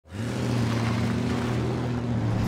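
Pickup truck engine running steadily as the truck drives, a low even hum over road noise.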